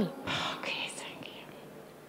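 A person's breathy whisper, toneless and lasting about a second near the start, then fading to quiet room tone.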